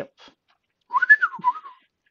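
A short whistle, about a second long, that rises and then falls back in pitch, with a few light clicks.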